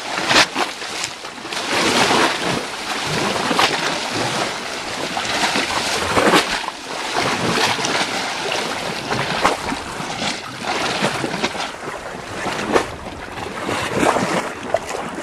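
Small waves washing into a rocky inlet: a steady rush of sloshing water with louder splashes every second or two.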